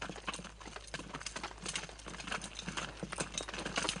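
Footsteps of several people walking over stony, gravelly ground, an irregular run of crunches and knocks that grows louder as they approach.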